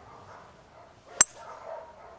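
A golf club striking a ball off the tee: a single sharp, ringing click a little over a second in.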